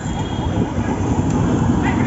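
Street traffic heard from a moving cycle rickshaw: a steady rumble of the ride and the road, with voices in the background.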